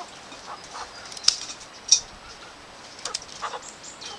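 Sharp scissors snipping through a chicken's wing flight feathers: two crisp snips about half a second apart, then a few fainter clicks and rustles.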